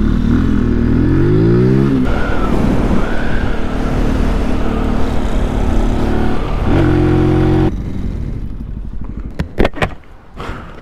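Benelli TNT 135's single-cylinder engine pulling away hard, rising in pitch for about two seconds before shifting up, then running at a steady pitch with wind and road noise. About eight seconds in the engine sound cuts off, leaving a quieter background with a few sharp clicks near the end.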